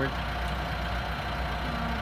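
Steady low mechanical hum with a thin, even whine above it, unchanging throughout.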